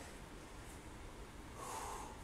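Faint room noise, then near the end one short, forceful breath out from a man exerting himself in press-ups.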